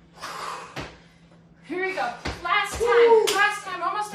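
Squat jumps on a tile floor: sneakers landing in three sharp knocks, the last two close together, between hard breaths, with a pitched voice sounding over the middle.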